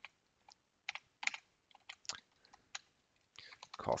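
Computer keyboard keys being typed: a scattered string of separate, irregular clicks as a new account number is entered.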